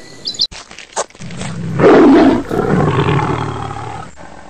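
A tiger roaring: one long, loud roar that starts about a second in, is loudest around two seconds in and fades toward the end.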